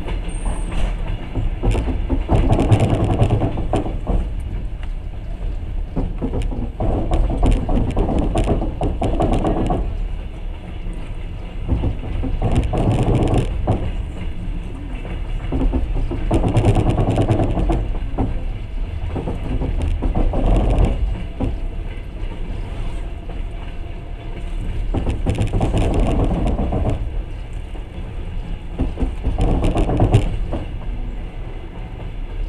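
Passenger train running, heard from inside the carriage: a steady rumble of wheels on rails that swells and fades about every four to five seconds.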